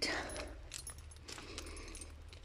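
Faint footsteps on a leaf-strewn forest track, with light jingling from a dog's leash and collar and scattered small clicks.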